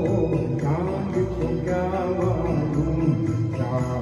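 A man singing a Hindi song into a microphone over a recorded karaoke backing track.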